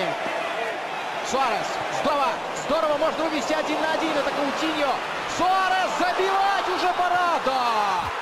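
Football match broadcast sound: a TV commentator's voice speaking over steady stadium crowd noise.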